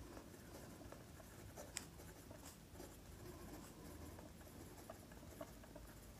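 Ballpoint pen writing on paper: faint, light scratching strokes as a line of words is written out.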